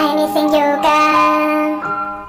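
Pitched-up, chipmunk-style singing over pop backing music. The song's last phrase is held, and a new steady high note comes in near the end as the music starts to fade out.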